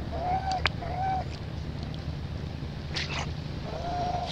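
Baby long-tailed macaque giving short, arched whimpering coos, two close together near the start and one near the end. A sharp click comes about half a second in and a brief crackle about three seconds in, over a low steady hum.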